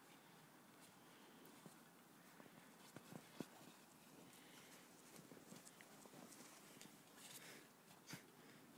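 Near silence with faint, scattered crunches of packed snow, a couple of sharper ones about three seconds in.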